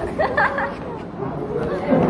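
Chatter: several students talking over one another, with a short voiced exclamation in the first half second.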